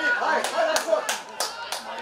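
Hand claps, about five sharp claps at roughly three a second, over people's voices calling and chattering.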